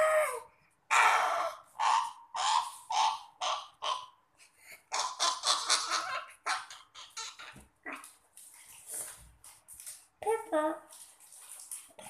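A young boy's breathy, whispered vocal sounds in a string of short bursts, with a brief voiced word about ten seconds in.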